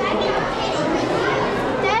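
Visitors' chatter with children's voices, and a child calling "Daddy" near the end.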